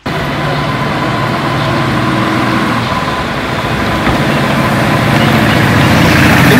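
Street traffic: motor vehicle engines running on a busy road as cars and taxis pass, a steady rumble that grows a little louder toward the end.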